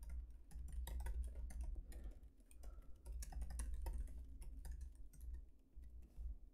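Typing on a laptop keyboard: a fast, irregular run of soft key clicks as a sentence is typed, with a few brief pauses.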